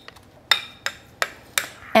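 Metal spoon knocking against a glass mixing bowl four times, about a third of a second apart, the first knock ringing briefly.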